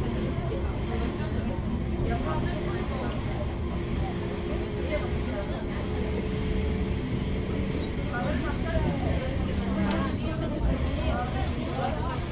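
Commuter train running on the rails, heard from inside the passenger car: a steady low rumble of the wheels with thin, steady whines that fade out about eight seconds in. Passengers talk quietly in the background.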